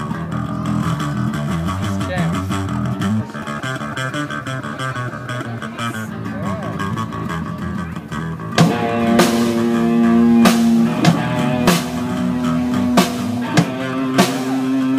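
Amateur rock band playing live through amplifiers: a guitar riff without drums for the first eight seconds or so, then the drum kit comes in with a crash and the full band plays on, with repeated cymbal crashes.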